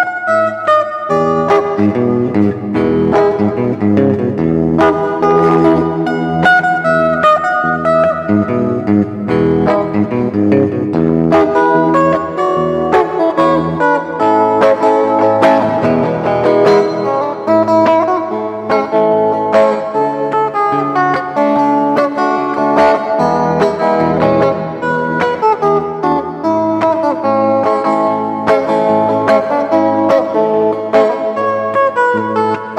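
Electric guitar played fingerstyle: a melody of plucked notes picked together with low bass notes, running without a break.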